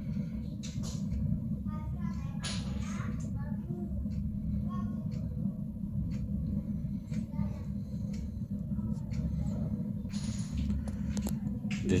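Burner running with its flame rising through a refractory riser tube: a steady low rumble from the fire and its draught fan. Faint voices are heard in the background.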